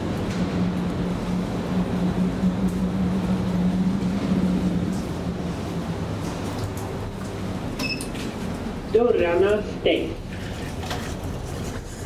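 A steady low machine hum carrying one low tone, which fades about five seconds in. Near the end there is a short high beep, then a brief burst of a voice.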